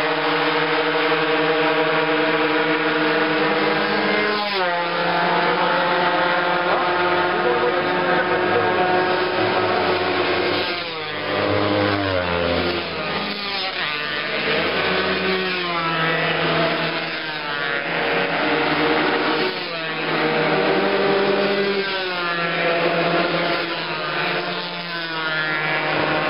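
Racing motorcycles accelerating hard down a straight, several engines overlapping. Each one climbs in rising sweeps of pitch, with a drop at every upshift.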